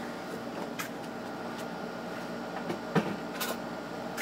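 Steady whir of an infrared rework station's cooling fans running at full speed on 220 V from a step-up transformer, with a few light clicks and a single knock about three seconds in.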